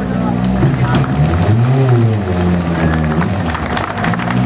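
Ford Focus WRC rally car's turbocharged four-cylinder engine running as the car rolls slowly up onto the ramp. About halfway through, the engine speed rises and falls once.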